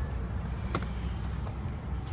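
Steady low rumble of a car's engine and tyres heard inside the cabin while driving, with a brief light tap about three-quarters of a second in.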